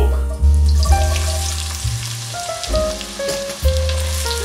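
Diced onions sizzling as they are tipped into hot pork lard in a pot, a steady fine hiss that starts just after the opening. Background music with a deep bass line plays throughout.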